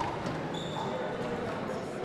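Ambience of a large indoor sports hall: faint murmur from spectators and a single light knock at the start.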